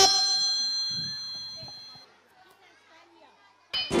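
A chime rings and fades away over about two seconds, followed by faint chatter from a crowd of children. Just before the end, a loud musical jingle starts.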